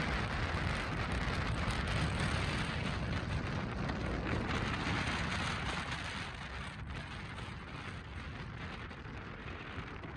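Road and wind noise from a moving car, a steady rushing of tyres on asphalt and air around the car, heavy in the low rumble. It eases off a little after the middle.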